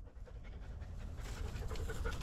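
Black Belgian Shepherd (Groenendael) dog panting.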